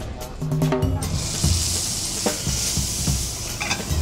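Beef fillet searing in oil in a hot skillet: a steady sizzle from about a second in until near the end, over background music with a beat.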